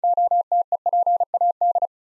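Morse code at 35 words per minute, a single steady pitch keyed in short dits and longer dahs, spelling the word NOTEPAD; it stops shortly before the end.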